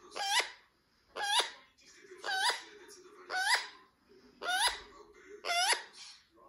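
Rose-ringed (Indian ringneck) parakeet giving a short, rising call over and over, about once a second, six times, as part of its courtship display.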